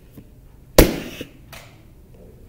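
A hand gives the soft-plastic dolphin night light one sharp knock, the loudest sound here. A much fainter click follows about a second later.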